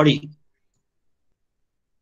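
A man's voice finishing the word "body" in the first moment, then dead silence, with the sound gated out completely.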